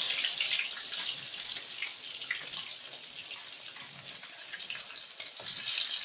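Oil sizzling steadily in a steel wok as small anchovy fritters shallow-fry, with a few light scrapes and taps of the spatula. The sizzle is loudest at first, eases off in the middle and swells again near the end.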